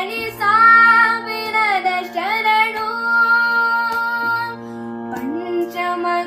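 A boy singing a Kannada song over a steady drone accompaniment. He holds two long notes, the first bending downward at its end, with ornamented turns between them.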